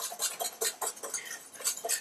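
Wire balloon whisk beating sabayon in a stainless steel mixing bowl, the wires clicking against the bowl about six times a second.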